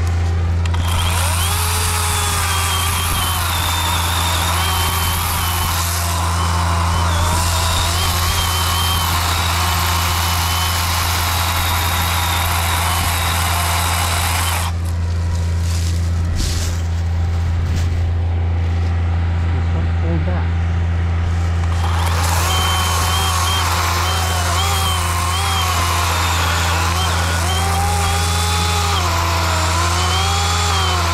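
Worx 40-volt cordless chainsaw cutting into a poplar trunk. Its motor whine wavers in pitch with the load and drops away for several seconds in the middle before the cut resumes. Under it runs the steady drone of a John Deere 2320 compact tractor's diesel engine, revved up while it pulls on the felling strap.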